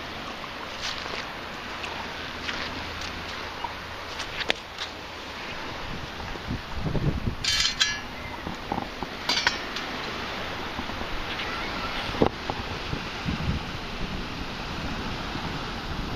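Steady wash of surf and wind with scattered clicks and clinks from a perforated metal sand scoop being handled, including a short rattle about seven and a half seconds in and a smaller one a couple of seconds later. A few low thumps are heard about seven seconds in and again around twelve to thirteen seconds.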